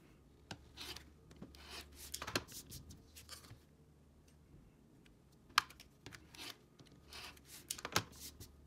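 A rotary cutter slicing through cotton fabric against a self-healing cutting mat along an acrylic ruler edge: several short rasping cuts, a pause, then more cuts near the end. A single sharp click a little past halfway is the loudest sound.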